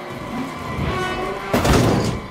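Film sound effects of a stock race car crashing: skidding with faint sustained tones, then a loud crash about one and a half seconds in as the car leaves the track and tumbles.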